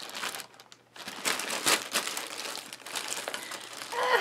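Clear plastic zip-top bags and sticker packets crinkling and rustling as hands rummage through them, with a brief lull about half a second in.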